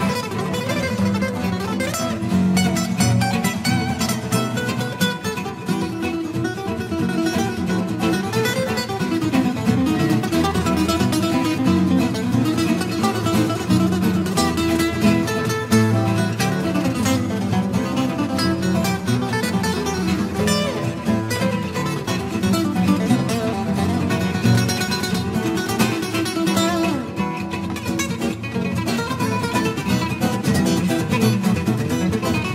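Acoustic guitars played together in a continuous instrumental piece, plucked notes over chords without a break.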